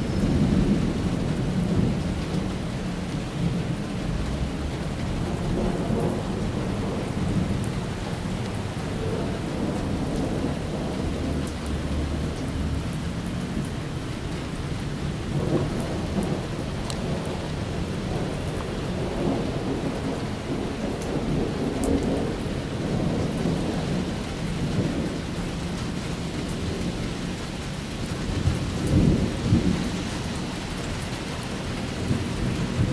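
Heavy rain pouring onto wet pavement, a steady hiss, with thunder rumbling low beneath it in swells. The loudest rumble comes near the end.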